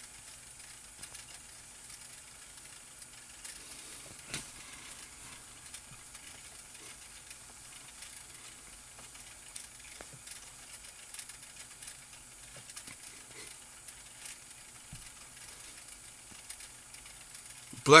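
Faint steady hiss of a recording's noise floor, with a few small clicks; a man's voice comes in at the very end.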